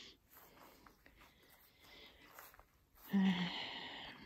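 Faint background for about three seconds, then a woman's short, breathy sigh-like vocal sound.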